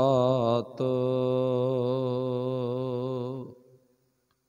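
A man's solo voice chanting a line of Sikh verse in a slow, drawn-out melody: a short phrase, then one long held note with a wavering pitch that fades out about three and a half seconds in.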